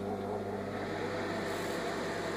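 Samsung MG23F302TAS microwave oven running with a steady low hum. It is working again after its blown fuse was replaced.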